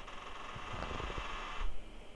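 Faint typing on a computer keyboard, a few soft keystrokes, over a steady hiss that cuts off suddenly about a second and a half in.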